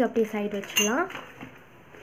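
Metal costume jewellery in a plastic packet clinking as it is handled and put down, with a sharp click at the start and a bright metallic clink just under a second in, over a woman's speech.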